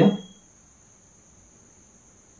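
A spoken word ends and a short ringing chime dies away in the first half second. After that there is only a faint, steady, high-pitched whine in the background.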